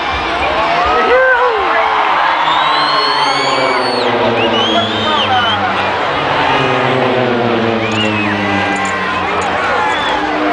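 A formation of Embraer T-27 Tucano turboprop trainers passing overhead. Their propeller drone slides slowly down in pitch as they go by, under the chatter of a crowd.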